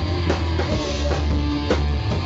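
Punk band playing live: electric guitar and a heavy bass line over a steady drum-kit beat, with regular loud drum hits.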